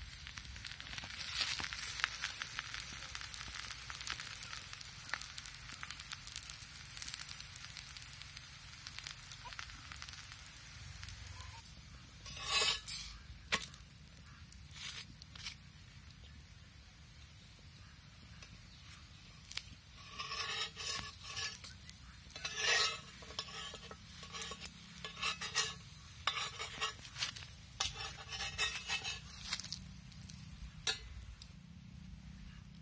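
Adai frying on a black iron griddle over a wood fire, a steady sizzle for the first dozen seconds. After that the sizzle is quieter and is broken by short metallic scrapes and clinks of a spatula on the griddle, coming thickly in the last ten seconds as the adai is loosened and lifted.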